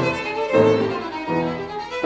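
Violin and 1870 Baptist Streicher Viennese grand piano playing Romantic chamber music together. The violin carries a sustained melody while new piano notes enter about every three-quarters of a second.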